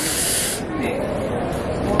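A loud hiss lasting about half a second, then steady lower background noise.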